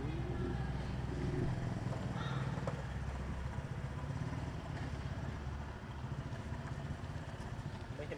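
A steady low engine hum, like a motor vehicle running nearby, easing a little after about five seconds.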